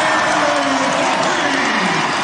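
Large arena crowd cheering and applauding loudly and steadily just after the home team's game-tying basket.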